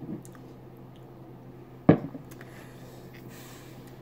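Mouth sounds of a person tasting a sip of beer, with one short, sharp sound about halfway through, over a faint steady room hum.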